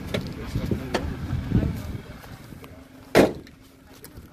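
Subaru Sambar mini truck idling with a steady low hum and small clicks and rattles, broken by one loud, sharp knock about three seconds in.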